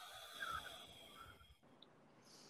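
A person taking a slow, deep breath as part of a guided breathing exercise. It is faint, swells about half a second in and fades after about a second and a half.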